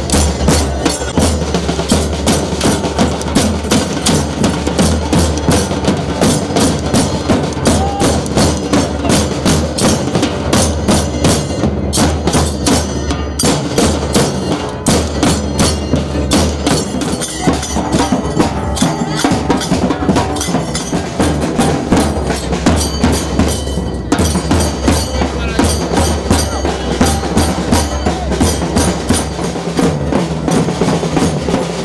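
Large drums beaten with sticks in a fast, steady rhythm.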